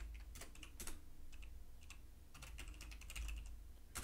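Typing on a computer keyboard: quick clusters of keystroke clicks with short pauses between them.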